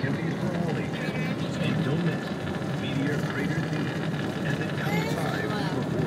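Steady low drone of a motorhome driving on the highway, its engine and road noise heard from inside the cabin, with faint indistinct voices over it.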